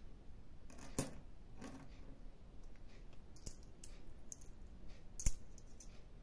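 Euro coins clicking and clinking as they are picked one at a time from a palm and set down: a handful of light, separate clicks, the sharpest about a second in and again near the end.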